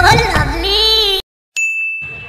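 A man's voice singing loudly cuts off a little over a second in. After a brief silence a single bright ding chime sounds and rings on, slowly fading.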